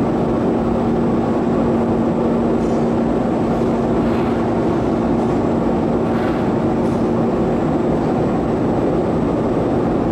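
Gas-fired glory hole burner and blower running steadily: a constant rushing noise with a low hum.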